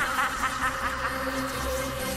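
Electrical buzzing and crackling with a steady hum under it, strongest in the first half-second: a sound effect of electricity surging through a wall of TV screens.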